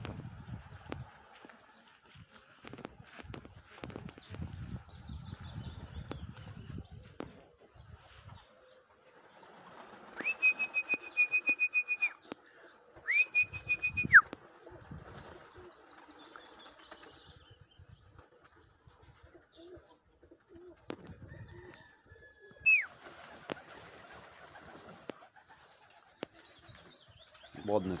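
Domestic pigeons' wings flapping and clapping as the flock circles and lands. About ten seconds in, a pulsing whistle is blown for about two seconds, then again more briefly, ending in a downward slide, and a short falling whistle comes later, calling the pigeons down to feed.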